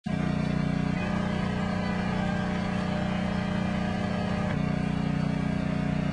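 A steady, loud, low mechanical hum that shifts slightly about a second in and again near the five-second mark.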